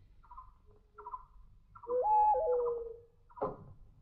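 A hollow, hooting call on the film's soundtrack, stepping up in pitch, holding, then falling back and trailing off, once about two seconds in. Short faint chirps repeat under it about once a second.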